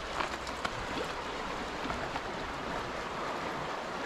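Shallow river water rushing over rocks and gravel, a steady even rush.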